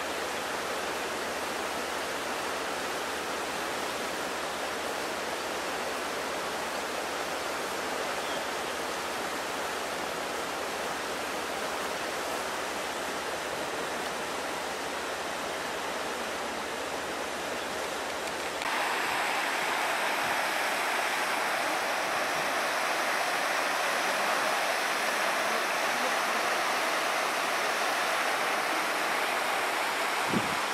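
Steady rush of muddy floodwater running down a rain-swollen ravine. About two-thirds of the way in it switches abruptly to a louder, brighter rush of water pouring over an overflow edge.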